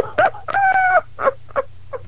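A person laughing: a run of short pitched bursts that grow shorter and fainter toward the end.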